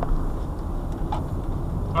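Steady low road and engine rumble heard inside a car's cabin as it drives slowly round a roundabout at about 20 mph.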